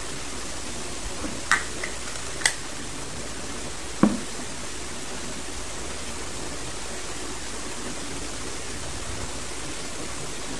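Steady room hiss with three brief soft clicks, about one and a half, two and a half and four seconds in; the last is the loudest.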